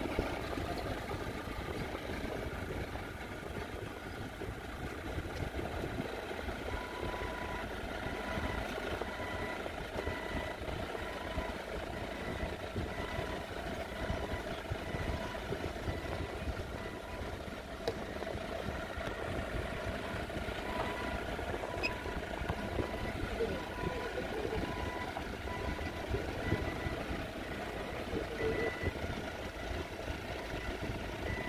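Clark forklift engines running at low speed. From about seven seconds in, a forklift's warning beeper sounds over them in a steady run of repeated beeps.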